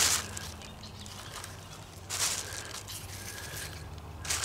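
Plastic shopping bag crinkling as morel mushrooms are dropped into it, in two short rustling bursts: one at the start and another about two seconds in.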